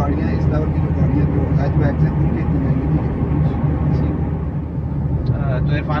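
Steady low rumble of road and engine noise inside the cabin of a Toyota Vitz 1.0 hatchback cruising at road speed, with faint talk over it.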